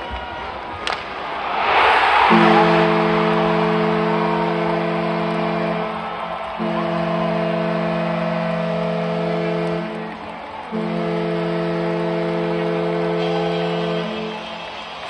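Hockey arena goal horn sounding three long blasts of a steady chord, each about three and a half seconds, marking a home-team goal. It sounds over crowd cheering, which swells to its loudest just before the first blast.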